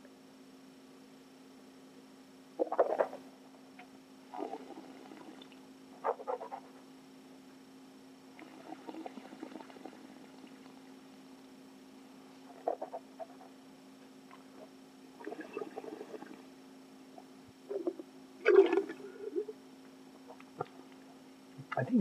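A taster sipping red wine and working it around the mouth: short, scattered slurping and swishing sounds, over a steady faint electrical hum.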